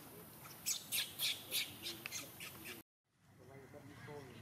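A baby macaque screaming in short, shrill squeals, about four a second, while young monkeys hold it down. The squeals cut off suddenly near the end, and faint whimpers follow.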